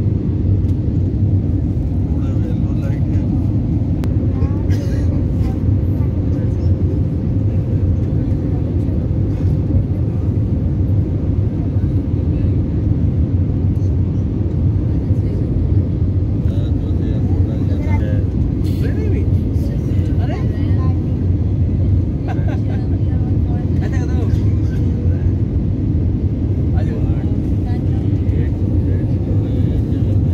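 Steady low rumble of airliner cabin noise, the engines and rushing air heard from inside the cabin at a window seat, with faint voices here and there.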